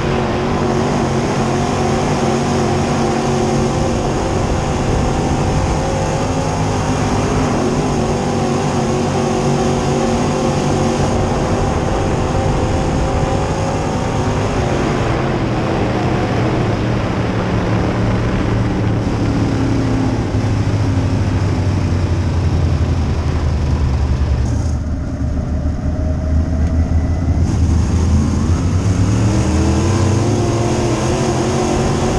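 A 602 Sportsman dirt-track race car's GM 602 crate V8, heard from inside the cockpit at racing speed. The engine note rises and falls as the car comes on and off the throttle around the oval. Near the end it backs off briefly, then climbs again as the car accelerates.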